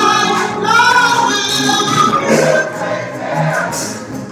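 Gospel singing: a woman sings lead into a microphone with a choir or congregation singing along, holding long notes with vibrato that ease off about halfway through.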